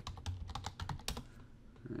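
Computer keyboard typing: a quick run of about ten keystrokes in the first second or so, ending with a louder keystroke.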